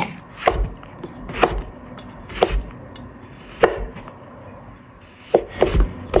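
A wide Chinese cleaver cutting fresh shiitake mushrooms on a wooden cutting board. The blade knocks on the board about six times, roughly once a second.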